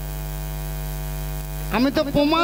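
Steady electrical mains hum in the stage sound system, a low buzz with a constant pitch; a man's voice comes in near the end.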